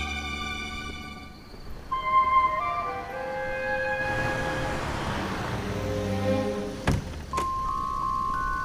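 Background music score with sustained tones and stepped, bell-like melody notes. A hissing swell rises and fades in the middle, and a sharp knock sounds a little before the end.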